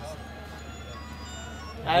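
A short jingle of faint, high, steady notes, then a man's loud voice breaks in at the very end.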